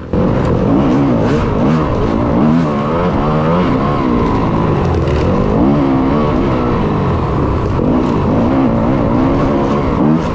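Yamaha YZ250FX's 250 cc four-stroke single-cylinder dirt bike engine, loud and close, revving up and down over and over as it is ridden hard along a dirt trail, its pitch rising and falling with throttle and gear changes.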